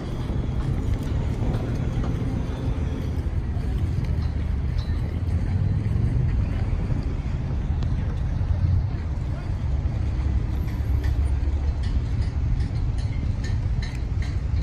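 Outdoor city ambience: a low, steady rumble with no distinct events.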